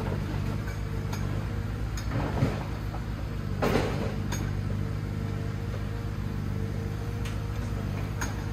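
Diesel engine of a log-laden forestry forwarder running steadily at idle, with scattered light clicks and a brief louder rushing noise about four seconds in.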